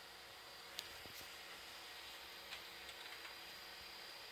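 Near silence: faint steady room hiss with a few soft ticks.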